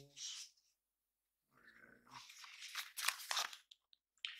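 Paper booklets and leaflets rustling as they are handled and leafed through, in irregular bursts in the second half.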